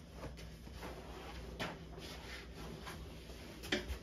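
A few faint knocks and clicks of objects being handled, the loudest near the end, over a steady low hum in a small room.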